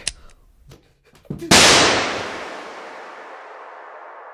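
A single revolver shot about one and a half seconds in, with a long echoing decay that fades into a steady ringing tone.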